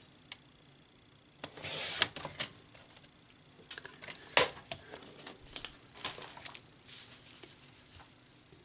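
Sliding paper trimmer cutting through a photo print: the cutter is drawn along the rail in one short scrape about a second and a half in. Then come sharp clicks and light rustles as the trimmed photo and the trimmer are handled.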